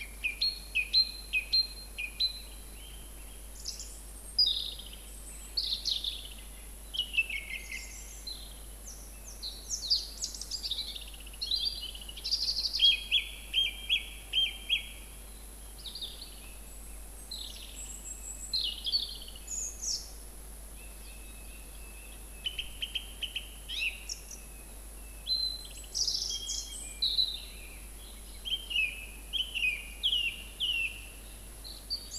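Song thrush singing: a run of loud, varied short phrases, many made of the same note or figure repeated several times in quick succession.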